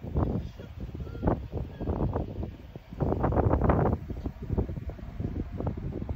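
Wind buffeting the phone's microphone in gusts, loudest about three seconds in.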